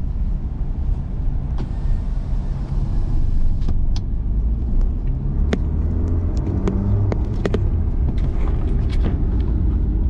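Steady low engine and road rumble heard from inside a moving car's cabin, with scattered sharp clicks through the second half.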